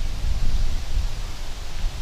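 A pause in the speech holding steady outdoor background noise: a low rumble with a faint hiss above it.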